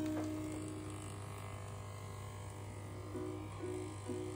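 Corded electric dog clippers running with a steady low buzz, with background music playing over it.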